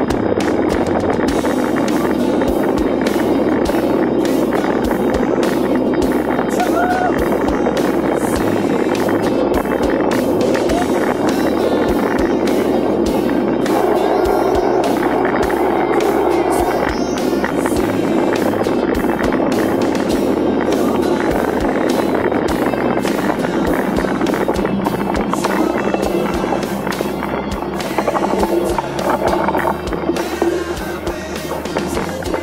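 Mountain bike rolling fast over a rough dirt trail: tyres crunching on the ground, constant irregular rattling and knocking of the bike and camera mount, and wind on the microphone.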